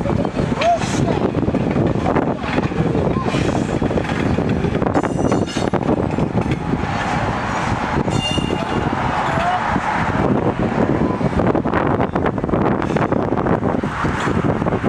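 Steady vehicle rumble with indistinct voices mixed in.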